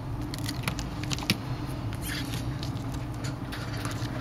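Scattered small crackles and clicks of a shattered Samsung Galaxy S5 screen being pressed and pried from its frame, over a steady low hum.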